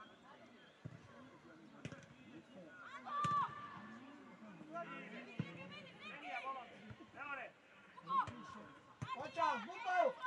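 Voices shouting calls across a football pitch during play, with several scattered thuds of the football being kicked.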